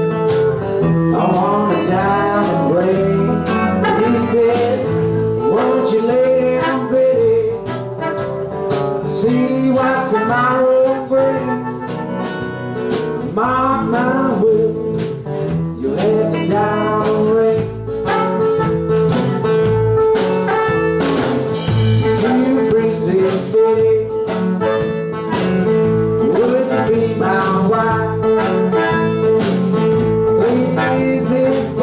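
A live blues band: a male singer with acoustic guitar, electric bass, drums with cymbals, and a harmonica.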